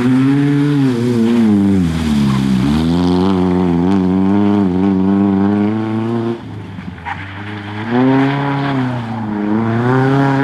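Nissan Sunny rally car engine revving hard under acceleration, its pitch falling about two seconds in and then climbing again. It drops in loudness a little after six seconds and is loud again about two seconds later.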